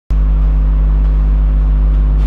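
A loud, steady low hum that starts abruptly at the very beginning and holds level, with a few fixed low tones and a fainter hiss above it.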